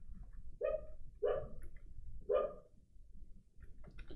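A dog barking three times, short barks about a second apart, with faint keyboard clicks.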